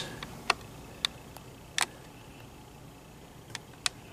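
Quiet room hiss with about five faint, sharp clicks scattered through it, the clearest a little under two seconds in.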